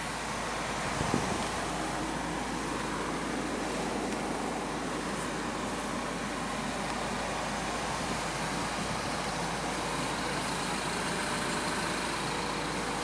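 Steady road-traffic and vehicle noise heard from inside a parked car's cabin, with a small soft bump about a second in.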